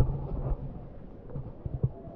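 Low thumps and rumble on the microphone: a sharp one at the start, another about half a second in, and two close together near the end.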